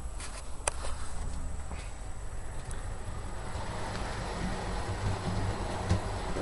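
Hornby model High Speed Train running along the track: a steady low motor hum with wheel rumble that grows louder in the second half. A single sharp click comes about a second in.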